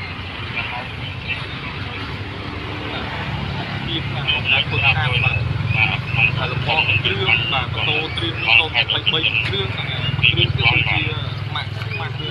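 People talking nearby, louder from about four seconds in, over a steady low hum.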